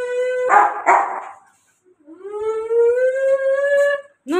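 Rottweiler howling: two long, drawn-out howls that rise slightly in pitch, with a short rough burst between them about half a second in.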